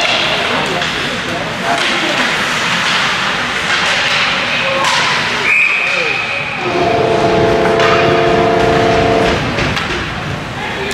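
Referee's whistle blown once for about a second, then a rink goal horn sounding a steady multi-tone blast for about two and a half seconds, signalling a goal.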